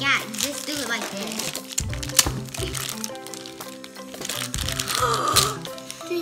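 Clear plastic packaging bags crinkling as small toy pieces are unwrapped, with background music playing throughout.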